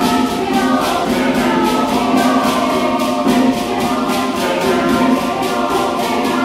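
Mixed chamber choir singing in sustained harmony, with a hand drum keeping a steady beat.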